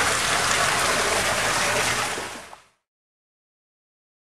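Steady outdoor background hiss, like rain or running water, that fades out about two and a half seconds in to dead silence.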